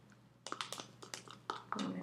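Plastic spoon stirring a thick mix of honey and coconut oil in a small plastic cup, clicking and scraping against the cup's side. The light clicks begin about half a second in and come about four or five a second.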